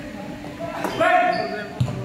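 Basketball bouncing on a hardwood gym floor, with a sharp bounce near the end.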